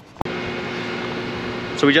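Cooling fans of an Electrify America DC fast charger running with a steady whir and a faint hum. It cuts in suddenly after a click about a quarter second in, as the charger starts a charging session.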